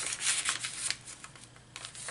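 Paper rustling and sliding as a paper tag is slipped into a pocket of a handmade paper journal: a run of quick rustles in the first second, then quieter, sparser ones.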